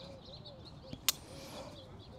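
A metal carabiner gate snapping shut once, a sharp click about a second in, as it is clipped onto the climbing rope. Faint bird chirps in the background.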